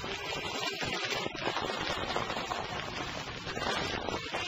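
A worn 1972 vinyl folk record playing, the song's music buried under a dense hiss and crackle.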